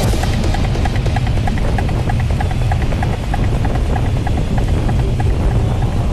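Strong wind buffeting on a bike-mounted camera microphone as a road bike moves at speed, a steady low rumble. Faint electronic music with a regular pulse of short notes runs beneath it.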